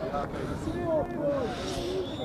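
Several voices of players and spectators talking and calling out on and around the pitch, overlapping, with no single close speaker.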